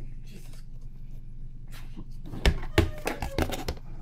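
Clear plastic tub lid being handled and set over a plastic enclosure: a quick run of sharp plastic clicks and knocks in the second half, after a quiet start.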